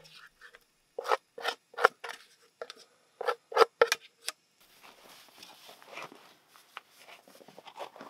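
A utensil scraping scrambled eggs out of a frying pan onto a metal plate: a quick run of about eight short, sharp scrapes, followed by softer, quieter scraping and rustling.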